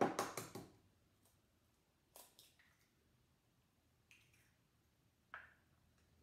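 An egg cracked against the rim of a glass bowl, a quick cluster of sharp clicks at the start, then a few faint isolated clicks and taps later as the shell is pulled apart and the yolk is separated by hand.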